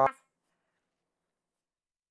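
Dead silence: the tail of a man's speech cuts off sharply at the very start, and the audio drops out completely.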